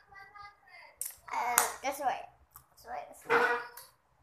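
A young person's voice: a quiet murmur at first, then two loud vocal outbursts with no clear words, the first about a second in and the second near the end.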